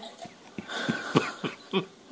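A person coughing in a short run of about five quick coughs, starting about a second in.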